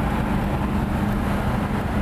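1967 Lamborghini 400 GT's V12 cruising at freeway speed: a steady, smooth hum under road and wind noise.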